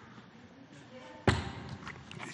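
A single sharp thump about a second into a quiet stretch, dying away over half a second in a large, echoing hall; faint room tone around it.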